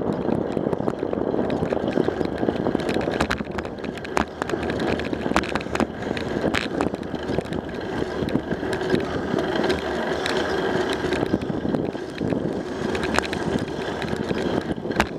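Bicycle rolling on an asphalt road, heard through a bike-mounted camera: a steady tyre and road rumble with scattered small clicks and rattles.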